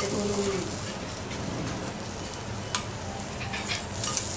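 Food sizzling and frying in a hot pan or on a griddle: a steady crackling hiss with scattered sharp pops. A short voice-like sound comes in at the very start.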